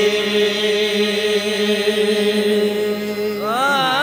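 Qawwali singing: one long, steady held note, then near the end a voice sliding up into a wavering, ornamented phrase.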